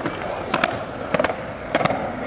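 Skateboard wheels rolling on concrete, with a few sharp clacks from the board spaced through the roll.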